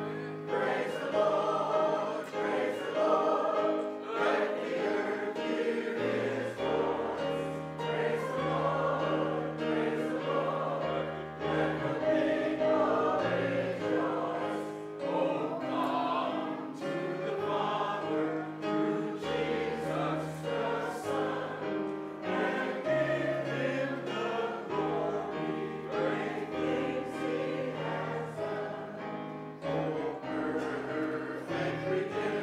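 Church congregation singing a hymn together with keyboard accompaniment, in slow held notes over a sustained bass.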